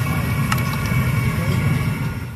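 Potato fries frying in a street vendor's deep fryer of hot oil, a steady sizzle over a constant low rumble, with a single click about half a second in.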